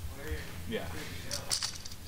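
Faint, indistinct voices over a steady low hum, with a short burst of hiss about one and a half seconds in.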